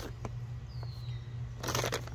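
Bone meal pouring out of a plastic bag into a planting hole, heard as a short hiss near the end along with the bag rustling. A steady low hum runs underneath.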